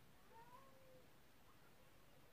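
A faint, short cat meow about half a second in, over near silence.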